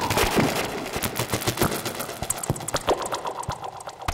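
Analog synthesizer patch playing a rapid, irregular stream of sharp clicky percussive hits, several a second, while its Pro-1 knobs are being turned. The low end thins out after about a second, leaving thinner, brighter clicks.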